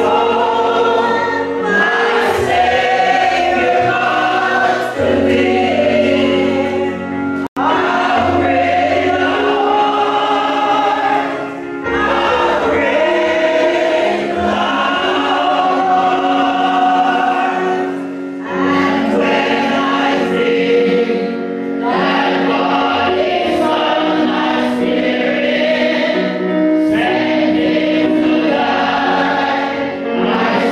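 Church congregation singing a hymn together, in long held notes with short pauses between phrases. The sound drops out for an instant about seven and a half seconds in.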